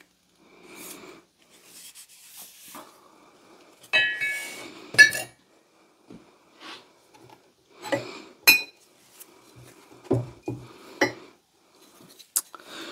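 Forged steel axe heads being handled and set down: a handful of sharp metallic clinks and knocks, the first, about four seconds in, ringing briefly, with rubbing and shuffling between them.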